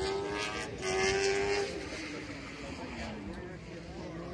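Race car engine holding a steady pitch for about the first two seconds, then dropping in pitch as it winds down.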